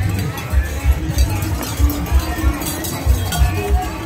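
Hoofbeats of several horses breaking into a gallop on dry dirt, amid crowd voices and background music with a thumping bass beat.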